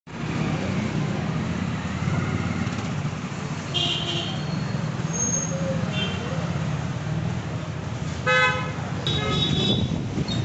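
Street traffic noise with a steady low rumble and several vehicle horns honking. The loudest is a short honk a little after eight seconds, followed by another about a second later.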